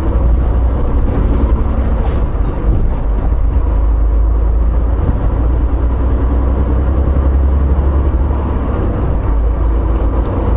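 Semi truck's engine and road noise heard from inside the cab while driving: a steady, low drone.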